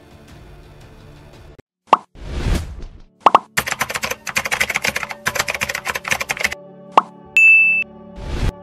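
Animated outro sound effects over a soft music bed: a pop and a whoosh about two seconds in, another pop, then about three seconds of rapid keyboard-typing clicks as a search bar fills in, and near the end a pop and a short bright electronic ding.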